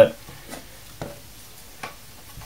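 Light handling noise from an opened Chicony H265AM power supply's metal case being turned in the hand: three faint clicks spread over a couple of seconds.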